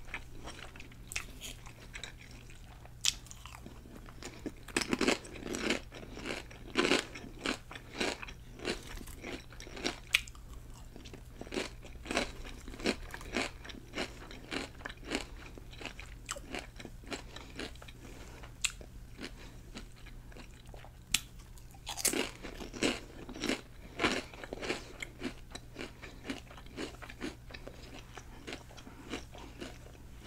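Close-miked chewing of a club sub sandwich and crunchy chips: wet chewing with many short crisp crunches, in two denser spells, about five seconds in and again past twenty seconds.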